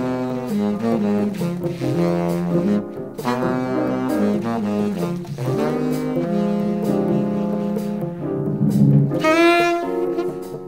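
Jazz recording: saxophone and brass horns playing a slow melody in held, harmonised notes over a walking bass line, with a bright high horn note entering near the end.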